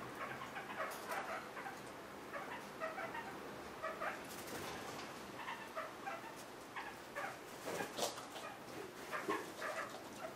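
Kakariki (red-crowned parakeets) giving a run of short, soft chirps, with a few sharp clicks near the end.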